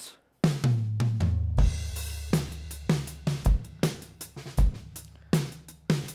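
Multitrack acoustic drum kit recording played back on its own: a groove of kick drum, snare and cymbals, starting about half a second in after a brief silence, with the open sound of a live drum room.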